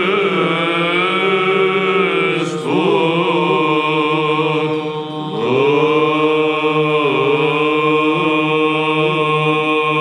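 Byzantine chant by male voices: a melodic line sliding between held notes over a steady low drone (the ison), with a short dip in the singing about five seconds in.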